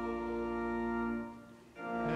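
Organ holding the closing chord of a hymn verse, fading out about one and a half seconds in, then a new chord entering just before the end as the next verse begins.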